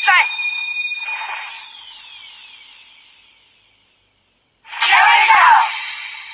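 Kiramai Changer toy brace playing electronic sound effects through its small speaker. A voice clip ends just at the start, then a shimmering sound with falling tones fades out over about three seconds. A loud burst follows near the end and fades.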